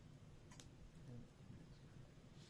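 Near silence with one faint, sharp click about half a second in.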